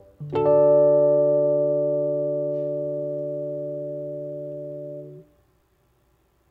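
A closing chord on a keyboard, struck about a quarter second in and held, fading slowly until it is released and stops just after five seconds.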